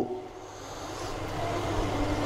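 Room background after the voice stops: a steady low hum with a rumbling noise that slowly grows louder.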